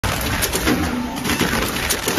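Drip coffee bag packing machine running, with clattering mechanical noise, sharp clicks and a low tone that comes and goes.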